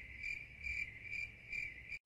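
Crickets chirping faintly, an even chirp repeating about two or three times a second.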